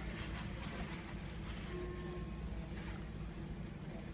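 Steady low background hum with faint handling of baseball trading cards, a few soft ticks and rustles as the cards are shifted in the hands.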